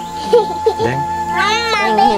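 A short, high-pitched cry that rises and then falls, about a second and a half in, heard over quiet voices.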